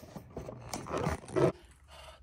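Handling and rustling noise from a fabric tote bag and Christmas decorations, recorded in slow motion so that it plays back low-pitched and drawn out, with a growl-like sound. It cuts off suddenly about a second and a half in.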